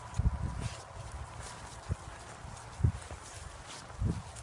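Footsteps on grass heard as dull low thuds: a few at the start, then single ones about two and about three seconds in.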